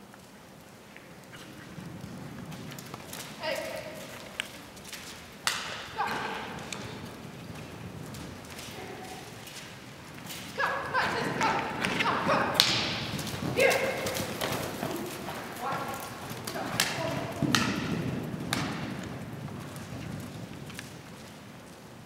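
A horse galloping through a barrel pattern on soft dirt footing, its hoofbeats thudding. Loud shouts and whoops of encouragement come in bursts over it several times.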